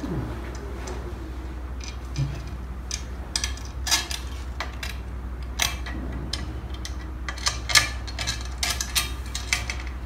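Light, irregular metallic clicks and taps as a 3D printer's metal heated bed, with its mounting screws and springs, is fitted down onto the bed carriage.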